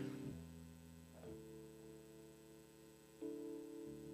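Quiet, sustained chords on a church keyboard, held and changing to a new chord about four times.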